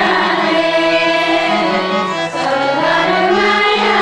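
Voices singing a song to harmonium accompaniment, the harmonium holding steady notes beneath the wavering sung melody.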